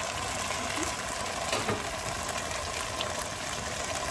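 Steady rushing noise of stovetop cooking, with a pot of mutton gravy simmering on a gas range. A couple of faint brief voice sounds.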